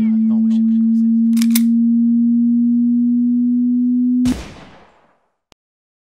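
A loud, steady electronic tone, low in pitch and rising slightly, cut off abruptly about four seconds in by a sudden loud burst that dies away over about a second; a faint click follows.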